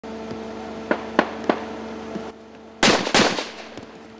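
Gunfire: a few faint, distant-sounding shots in the first half, then two loud shots about a third of a second apart near the end, each trailing off in an echo.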